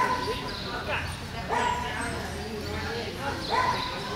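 A dog barking a few times in short, sudden barks, over faint background chatter.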